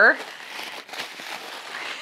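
Bubble wrap crinkling as it is pulled off a stack of lightweight faux books, a continuous papery crackle with no clear pops.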